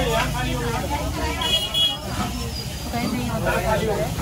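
Indistinct voices talking over a steady low rumble of traffic, with a short high toot about a second and a half in.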